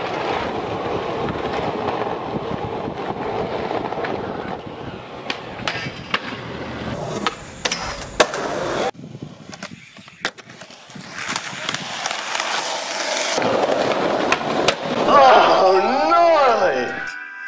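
Skateboard wheels rolling on pavement, broken by several sharp pops and clacks of the board as tricks are attempted. Voices shout near the end.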